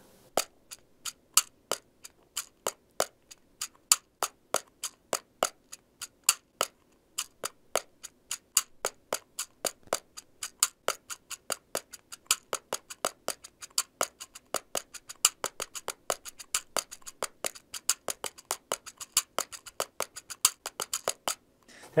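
Jacarandaz pocket cajón (cajón de bolso), a small handheld hardwood box drum, struck with the fingers in a samba rhythm. It gives a steady run of short, dry wooden clicks, several a second, which grow busier in the second half and stop briefly just before the end.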